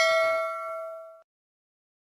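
Notification-bell chime sound effect, ringing out from a single strike with several steady tones that fade, then cutting off abruptly a little over a second in.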